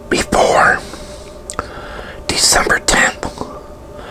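A man whispering close to a clip-on lapel microphone, in short phrases with pauses between them.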